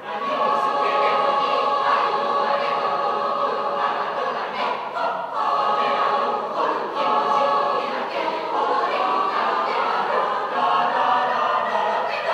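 Mixed choir singing a Japanese folk-song arrangement in held, sustained chords, the phrases breaking off briefly every few seconds.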